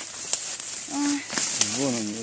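Leaf litter and twigs rustling and crackling underfoot, with a few sharp snaps, as a person walks over a forest floor. A woman's voice makes a short sound about a second in, and her speech starts again near the end.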